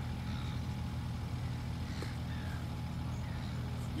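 Steady low engine hum, like a vehicle idling, holding an even level throughout.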